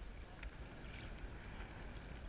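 Faint water lapping and small splashes against a sea kayak's hull, with a low wind rumble on the microphone.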